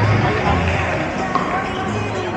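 Pickleball paddles striking the ball and the ball bouncing on the court floor, a few short hollow pops, over a background of many people talking across the hall.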